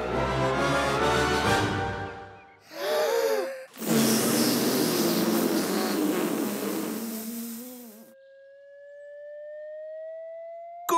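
Cartoon music fading out about two and a half seconds in, then a short wavering sound and a hissing, shimmering sound effect lasting about four seconds. It ends on a single thin tone rising slowly in pitch.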